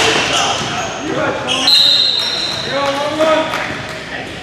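Spectators' voices and calls in a large, echoing gym, with a basketball bouncing on the hardwood floor and a short high squeal about two seconds in.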